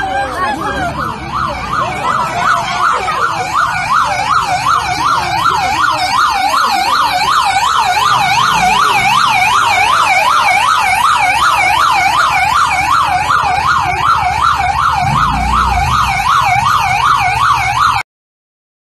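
Police siren warbling rapidly up and down, about three sweeps a second, growing louder over the first few seconds and then holding steady.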